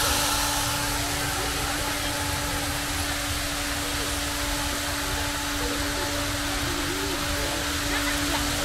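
Ornamental fountain spray splashing down into its pool, a steady hiss of falling water, with a steady low hum running underneath.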